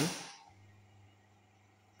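Faint, steady low hum of a small single-phase induction motor running forward (clockwise), switched on through its contactor by the selector switch turned to position one.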